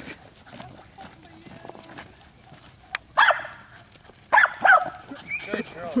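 Pembroke Welsh corgi barking: a single bark about three seconds in, then two or three quick barks just after four seconds.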